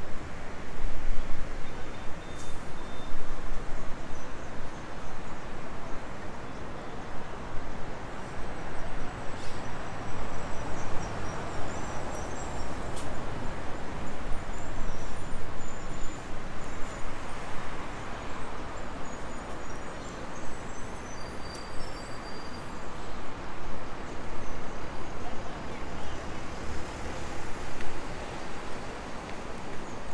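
Road traffic on a busy street: a steady rush of passing cars, swelling and easing as vehicles go by.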